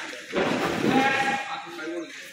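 Boys' voices calling and shouting, with the noise of many people moving on the wrestling mat.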